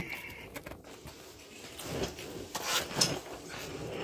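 Scattered knocks and rustling as a person gets down and settles onto a wheeled mechanic's creeper, with the busiest stretch about two to three seconds in.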